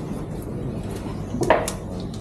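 Metal fish trays handled on a stainless-steel counter and scale: a few sharp clatters about a second and a half in, over a low steady hum.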